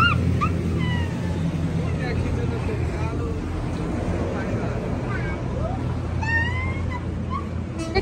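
A steady low motor drone, with short high chirps and squeaks scattered over it and a child's brief high squeal at the very start.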